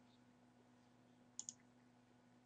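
Two quick, faint computer mouse button clicks about a second and a half in, over a faint steady low hum.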